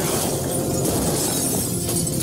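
A glass display case shattering as a body crashes through it, with shards showering down and scattering.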